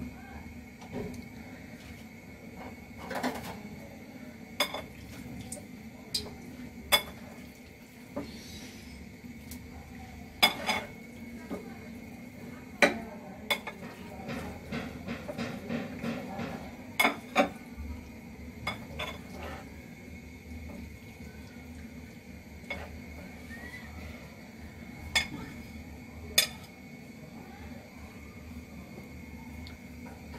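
Kitchen clatter around an empty aluminium kadai heating on a gas burner: sharp metallic clinks and knocks of cookware, scattered irregularly over a steady low hum.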